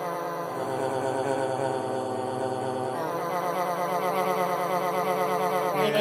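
Camel Audio Alchemy granular synth holding a frozen slice of a sampled spoken word ("plaeground"), sounding as a steady, grainy pitched drone. Its timbre shifts about halfway through as the grain start point is moved.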